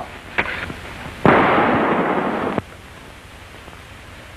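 A rapid volley of revolver gunfire, about a second and a half of shots run together into one loud burst that stops abruptly.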